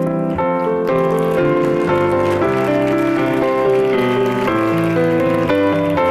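Piano music playing: a melody of held notes that change about twice a second.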